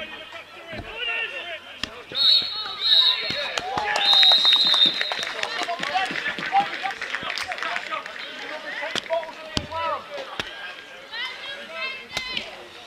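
Referee's whistle blown three times, two short blasts and then a longer one, over shouting from players and spectators: the full-time whistle ending the match.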